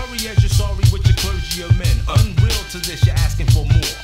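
Mid-1990s hip hop track: a rapper's voice over a steady drum beat with heavy bass.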